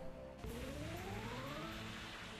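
Online slot game music and sound effects. About half a second in, a rising tone starts and climbs steadily for about a second as the free-spins round begins.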